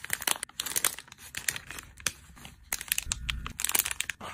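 Clear plastic packaging crinkling as hands handle and fold it, a dense run of irregular crackles.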